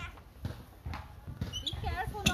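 A child's footsteps on a playground slide as the child climbs up it, about two knocks a second. A child's voice near the end.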